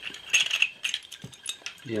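Small sharp metallic clicks and clinks as a vintage aircraft toggle switch's housing is handled and pulled apart at its captive screws; a cluster about half a second in and a few more a second in.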